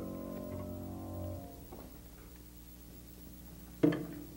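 The last chord of a jazz ballad ringing out on piano and upright bass, then fading away. Just before the end, a single sharp knock.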